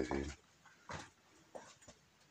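Footsteps on a stony cave floor: a few faint scuffs and taps, after a brief voice sound at the very start.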